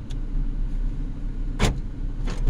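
Car engine idling, heard from inside the cabin as a steady low rumble, with one short sharp sound about one and a half seconds in.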